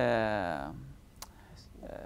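A man's drawn-out hesitation sound, an "eh", for about the first second, then a single sharp click.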